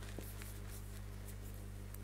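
Quiet room tone carrying a steady low electrical hum, with a couple of faint ticks.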